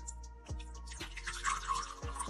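Water being poured slowly into a glass, a splashing trickle that starts about half a second in, over background music.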